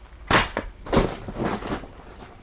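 School papers and folders being handled close to the microphone, rustling and crinkling in three short bursts.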